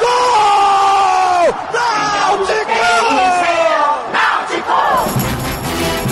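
Radio football commentator's long drawn-out goal shout, the vowel held for over a second at a time and sliding down in pitch at the end of each breath. About five seconds in, a music jingle with a steady beat comes in.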